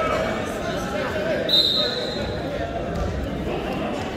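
Voices of coaches and spectators calling out in a reverberant gymnasium during a wrestling bout. About a second and a half in comes a thump, along with a brief, steady high squeak that fades within about a second.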